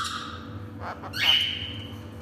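Lorikeet giving a short, shrill, steady-pitched screech about a second in, with a fainter call just before it.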